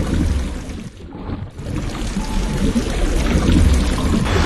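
A loud low rumble with steady hiss over it, dipping briefly about a second in.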